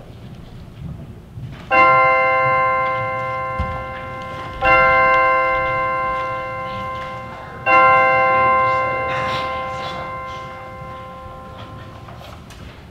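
A bell struck three times, about three seconds apart, each stroke ringing and slowly fading: the three tolls that open the worship service.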